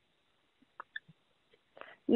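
Near silence: a pause on a recorded phone line, with a few faint short sounds about a second in and just before the talking resumes.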